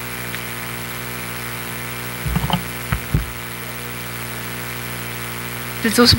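Steady electrical hum from the hearing room's microphone and sound system, with a few soft low knocks a little over two seconds in and again around three seconds.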